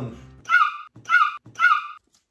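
A small dog yapping three times, short high-pitched barks evenly spaced about half a second apart.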